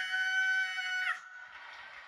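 A person's held, high-pitched scream ("Ah!") on one steady note, cutting off suddenly about a second in. Faint audience cheering and applause from the TV follows.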